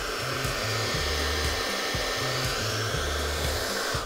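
Hair dryer blowing steadily, a cut-off water-bottle top taped over its nozzle as an air funnel.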